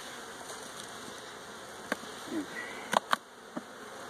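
Honeybees buzzing steadily around an opened hive, the colony stirred up and flying. A few sharp knocks about two and three seconds in, from frames and the hive tool against the wooden box.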